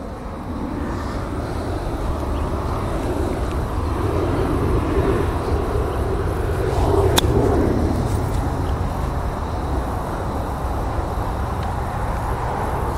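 A single sharp click about seven seconds in: an iron striking a golf ball off turf on a short pitch shot. Under it runs a steady low outdoor rumble that swells a little in the middle.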